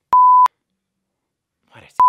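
A censor bleep: a loud, steady single-pitch tone lasting about a third of a second. A man says a couple of words near the end, and a second identical bleep begins right at the end, cutting him off.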